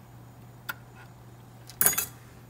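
Handling of a computer keyboard and its cables: a faint click about two-thirds of a second in, then a brief loud clatter near the end, over a low steady hum.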